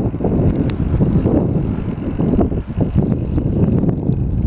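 Bicycle rolling fast over rough, cracked asphalt: a steady rumble from the tyres and frame with irregular small knocks and rattles, mixed with wind noise on the microphone.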